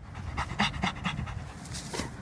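Dog panting hard with its tongue out, quick even breaths about four a second.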